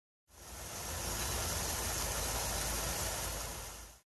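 Steady roadside noise, a low rumble with a hiss above it, fading in just after the start and out at the end.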